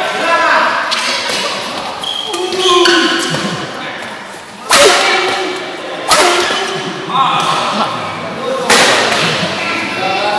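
Badminton rackets hitting the shuttlecock during a doubles rally: three sharp cracks in the second half, each with a short echo in the hall. Voices call out loudly between the shots.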